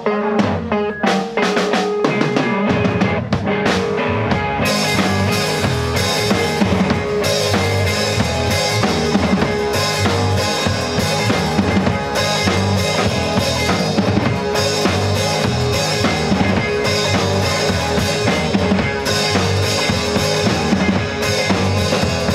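Live rock band playing: the drum kit starts with separate hits, low bass notes come in about three seconds in, and the full band with electric guitars, keyboard and cymbals runs on from about five seconds.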